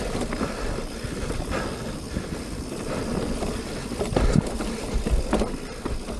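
Mountain bike rolling fast down a dirt singletrack: steady low rumble of tyres and air over the camera's microphone, with the bike rattling and a few sharp knocks over bumps, the loudest about four and a half seconds in.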